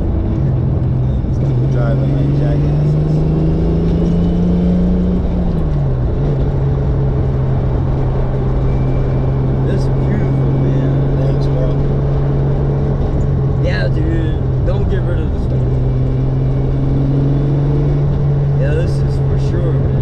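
Turbocharged 2JZ-GTE inline-six of a 1996 Lexus SC300, heard from inside the cabin as a steady low engine drone. Its pitch climbs gently for a few seconds, drops about five seconds in, then holds steady.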